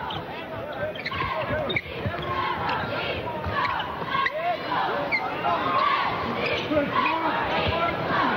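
A basketball dribbled on a hardwood court, with arena crowd noise and voices from the crowd and court throughout during live play.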